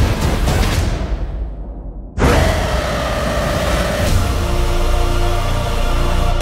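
Trailer score and sound design. The high end drains away and the sound dips for about a second, then a sudden loud hit about two seconds in brings back the full, dense music.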